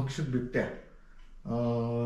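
A man speaking, with a short pause about a second in before he talks on.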